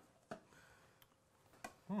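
Three faint, brief crunches of a blue-corn tortilla chip being bitten and chewed.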